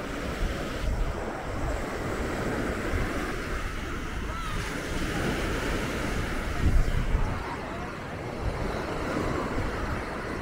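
Beach ambience: small waves washing onto a sandy shore, with wind buffeting the microphone in gusts, strongest about two-thirds of the way through.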